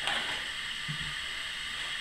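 Dell Inspiron 510m laptop lid being opened by hand, with one faint soft bump about a second in, over a steady hiss.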